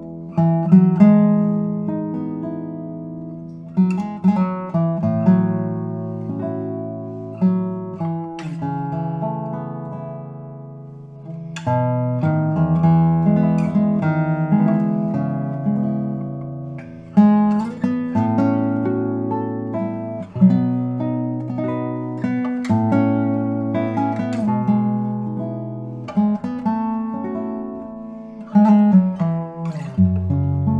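Radially braced 2023 Robin Moyes spruce-top classical guitar played solo fingerstyle: a melody over bass notes, each plucked note ringing and dying away.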